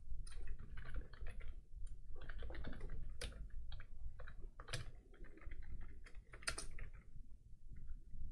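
Typing on a computer keyboard: quick runs of keystrokes with short pauses, and a few louder single key strikes.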